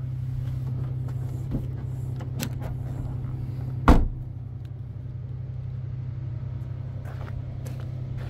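A Dacia Sandero Stepway's hatchback tailgate is shut about four seconds in, giving a single loud thud. A steady low hum runs underneath.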